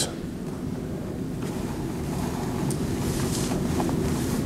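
Steady low rushing noise on the microphone, slowly growing louder, with a few faint ticks.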